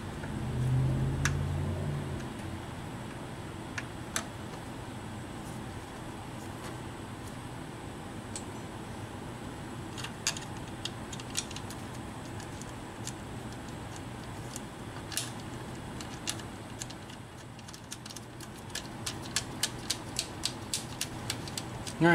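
Small metal clicks and clinks of hand tools and bolts as a power steering pump is worked into its bracket and bolted in, after a low rumble in the first two seconds. Near the end the clicks come quickly, a few per second.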